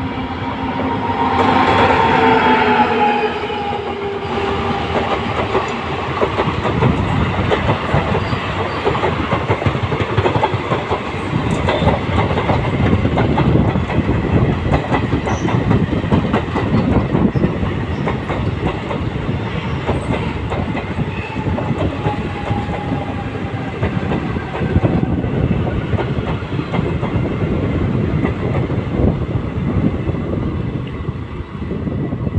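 Passenger express train hauled by a diesel locomotive passing close by. The locomotive's horn sounds for about the first three seconds and falls slightly in pitch as it goes by. Then comes a long, steady clickety-clack of coach wheels over the rail joints as the coaches run past.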